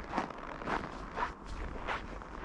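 Footsteps crunching on packed snow in about −21 °C cold, about two steps a second.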